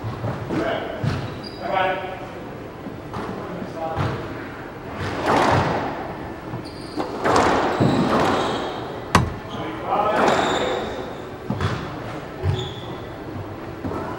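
Squash rally: the ball struck by racquets and hitting the court walls, repeated sharp hits echoing in the enclosed court, the sharpest crack about nine seconds in.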